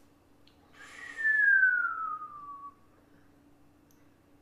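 A person whistling one long note that slides down in pitch, lasting about two seconds.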